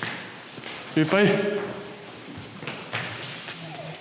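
A man's voice gives one short call about a second in, over a few light thuds of feet on a wooden floor in a large, reverberant room.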